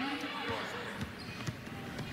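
Basketball dribbled on a hardwood court: three bounces about half a second apart, with faint voices in the arena.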